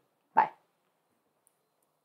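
A single short vocal sound from a man, such as a brief parting word or exclamation, about half a second in, followed by near silence.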